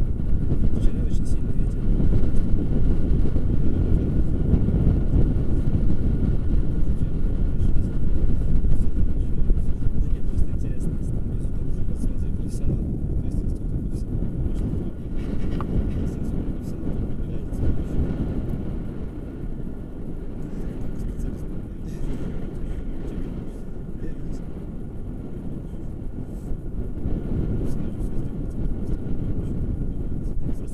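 Wind buffeting the camera microphone: a loud, rough low rumble that swells and eases throughout, a little quieter in the second half, with a few faint light clicks.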